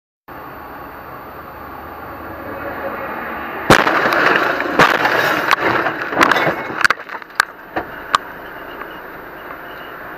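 Car crash heard from a dashcam: steady road noise that builds, then a loud impact about a third of the way in, followed by a string of sharp knocks and bangs over the next few seconds as the camera is thrown about.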